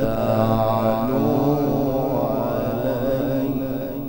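A male Quran reciter's voice chanting in a melodic, drawn-out style: one long ornamented phrase whose pitch wavers up and down. It eases off in loudness near the end.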